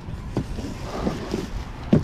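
Wind rumble and handling noise on a body-worn microphone, with a couple of knocks as grocery bags are set down on a wooden porch, the louder one near the end.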